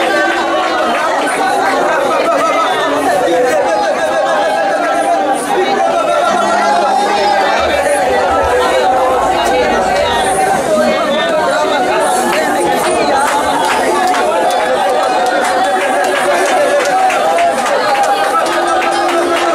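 Many voices praying aloud at once: a steady, overlapping babble of congregational prayer with no single voice standing out.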